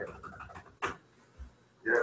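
A brief spoken 'yeah' and a sharp click, followed by a pause of near quiet.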